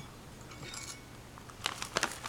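A spoon scooping dry Longjing tea leaves from a plastic bag: a faint rustle of the leaves and bag, with a few small clicks and clinks, sharper near the end.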